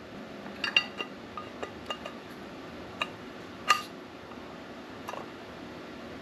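Light metallic clinks and taps from a machined aluminum part being handled and turned over in the hands, scattered irregularly, with the loudest tap about three and a half seconds in.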